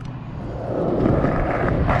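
Skateboard wheels rolling on concrete: a steady rolling noise that grows louder over the first second, then holds.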